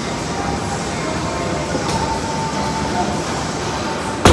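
Steady rumbling room noise of a busy gym, with faint voices in the background.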